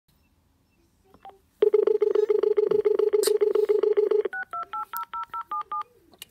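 Uniden XDECT cordless phone handset: a short key beep, then a loud, rapidly fluttering low dial tone for about three seconds, then about ten quick two-note keypad tones as a phone number is dialled.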